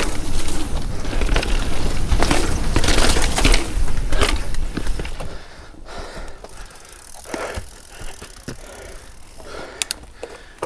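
Devinci Wilson downhill mountain bike riding a dirt trail: rumble of tyres and wind with rapid clicks and knocks of chain and frame rattling over bumps. About halfway through it drops off sharply and becomes much quieter, with only a few scattered clicks.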